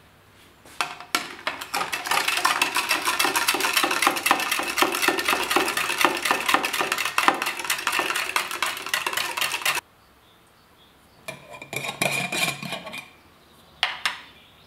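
A spoon stirring briskly in a tall drinking glass, clinking rapidly against the glass as salt and sugar are stirred into the liquid. It stops suddenly after about nine seconds, and a few more clinks and a knock on the glass follow near the end.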